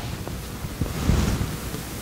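Steady background hiss of room tone with a faint low rumble, no voice.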